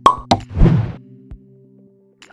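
Outro jingle for an animated end card: two sharp hits in quick succession, then a louder rushing swell, over low sustained music tones that fade out about a second and a half in.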